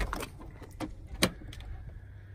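Clicks and light rattles as the driver's door of a 1994 Land Rover Defender 90 is swung open, with one sharp click a little past halfway.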